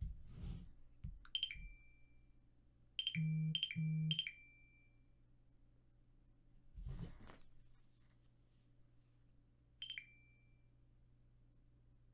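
Short electronic dings, each a quick high tone dropping to a slightly lower one: one a little over a second in, three in quick succession about three to four seconds in with a low buzz under them, and one more near the end. Soft handling noises at the start and about seven seconds in.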